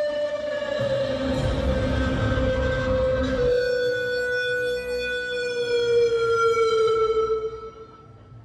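A synthesized siren-like tone, held and sliding slowly down in pitch, over band drums and bass that stop about three and a half seconds in. The tone then fades out near the end, closing the song.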